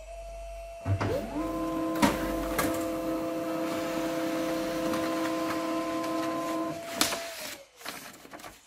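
HP Laser 137fnw laser printer printing a one-page report: its motors spin up with a rising whine, run with a steady whine of several pitches and a few clicks, then wind down about seven seconds in with a sharp click.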